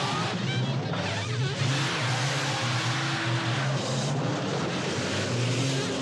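Valiant Charger engine revving hard under steady load, with wavering tyre squeals as the car slides, heard through a film soundtrack with music underneath.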